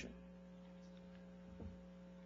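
Near silence with a steady electrical mains hum, and one faint short sound about one and a half seconds in.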